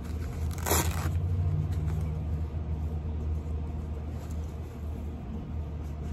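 Cloth rod sleeve rustling in a short swish about a second in as the rod is handled, over a steady low background rumble.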